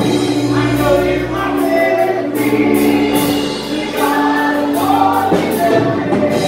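Live worship song: a woman and a man singing together over sustained keyboard chords and a strummed guitar, at a steady tempo.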